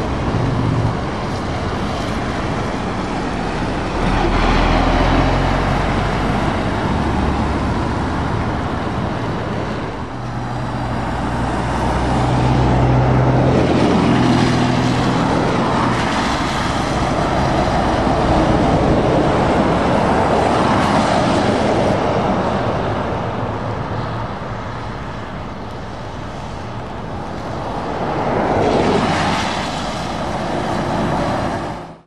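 Heavy diesel trucks and cars passing one after another on a wet road: engines running under a constant hiss of tyres on wet tarmac, swelling and fading with each pass. A Scania 660S V8 tractor unit goes by around the middle, with a low, steady engine note.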